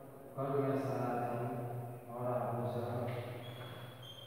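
A man's voice drawn out in a sing-song, chant-like way, in two long phrases: reading aloud slowly while writing on the blackboard.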